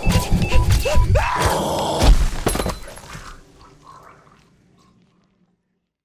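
Short electronic beeps, about three a second, over heavy thuds, then a loud shattering crash about two seconds in. After that the sound dies away to silence.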